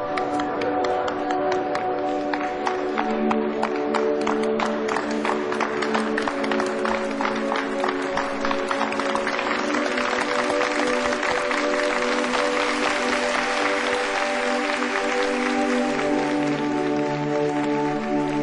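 Instrumental music with long held notes under a crowd's applause. The applause starts as separate claps, thickens into steady clapping, and thins out near the end.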